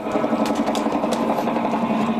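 A motor running steadily, a held hum with a rapid, even rattle over it.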